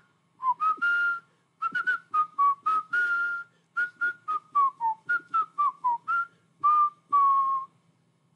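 A man whistling through pursed lips, freshly licked to help the sound: a quick run of short, breathy notes stepping up and down in pitch, ending on a longer held note that sinks slightly.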